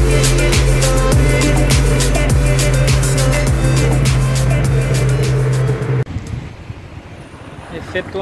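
Electronic background music with a heavy bass line and a regular beat, cutting off suddenly about six seconds in. A quieter, even rumble of vehicle noise remains after it.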